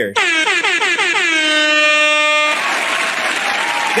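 An air horn sound effect: one long blast whose pitch slides down for about a second and a half, then holds steady and cuts off sharply. Applause follows it.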